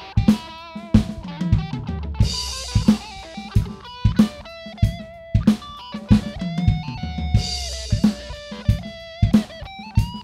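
Live rock band music: an Epiphone electric guitar played over a steady drum-kit beat, with pitched lines that bend and waver and cymbal crashes about two seconds in and again around seven and a half seconds.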